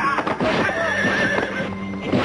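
An animal's wavering call, a quavering cry lasting about a second, over background music.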